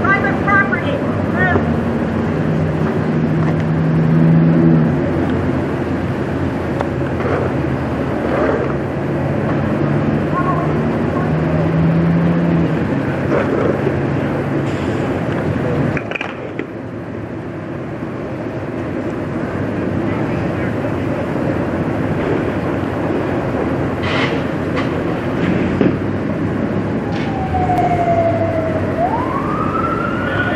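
Steady low mechanical rumble at a working fire scene, with faint voices. Near the end an emergency-vehicle siren starts up, its wail falling and then rising.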